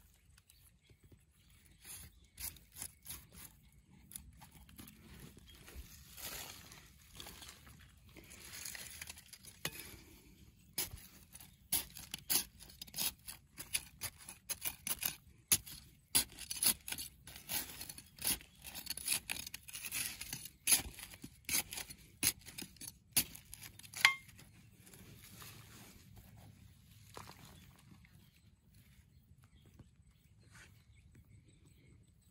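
A small hand digging tool chopping and scraping in stony soil around a tree stump's roots. There are scattered strokes at first, then quick repeated strokes for about a dozen seconds from about eleven seconds in, with one sharp knock near the end of that run, before it goes quiet.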